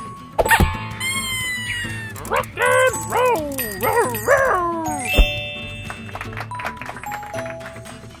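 Cartoon soundtrack: light background music with a sharp hit about half a second in and a falling, whistle-like sound effect, then a string of short wordless vocal sounds that rise and fall from about two to five seconds, ending on another sharp hit.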